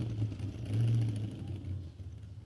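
Minibus engine running while driving, heard from inside the cabin as a steady low drone that swells slightly about a second in.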